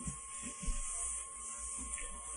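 Room tone of a recorded talk during a pause: a steady low electrical hum under a hiss, with a faint thin steady tone and a few soft low thumps.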